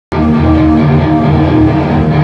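A rock band playing live, with electric guitar to the fore. The music cuts in abruptly just after the start, and there is no singing yet.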